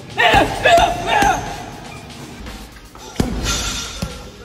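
Music, loudest in the first second and a half, with a single punch thudding into a heavy punching bag a little after three seconds in.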